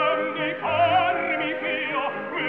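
Operatic voices singing held notes with a wide, fast vibrato over an opera orchestra, with a new sung note entering about half a second in. The sound is an old mono live recording with a dull, muffled top end.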